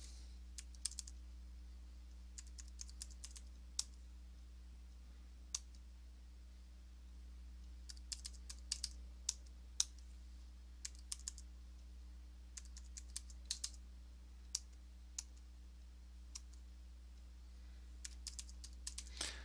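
Computer keyboard keystrokes in short bursts separated by pauses, as account numbers and amounts are typed in, over a faint steady electrical hum.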